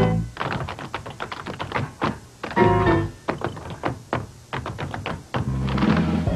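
Tap dancing: quick runs of tap-shoe strikes on the ground over jazz music, with the band's chords coming in as short accents, the loudest about two and a half seconds in.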